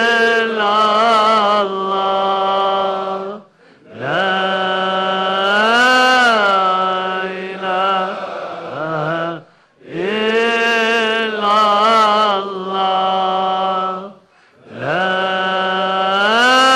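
A single voice chanting an Arabic devotional chant in long held phrases of four to five seconds. Each phrase bends up and down in pitch with ornaments, and there is a brief breath-gap between phrases.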